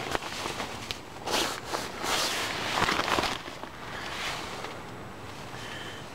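Rustling and shuffling of a person moving about inside a small nylon tent, the fabric crinkling in a few irregular bursts, loudest between about one and three and a half seconds in, then quieter.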